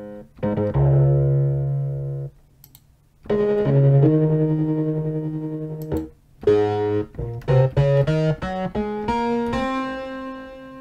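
Electric piano presets of FXpansion DCAM Synth Squad's Cypher software synth being played: a short phrase, then a held chord, then a run of quick notes climbing in pitch that ends on a held note.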